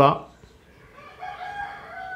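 A rooster crowing: one long call that starts about a second in, quieter than the voice before it, dipping slightly in pitch as it trails off.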